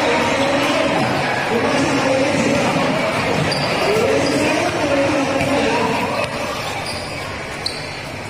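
Basketball bouncing on the court during play, under the steady chatter and shouts of a large crowd in an echoing hall.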